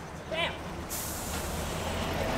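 Double-decker bus close by: low engine rumble, with a sudden steady hiss of its air brakes starting about a second in. A brief voice is heard faintly just before the hiss.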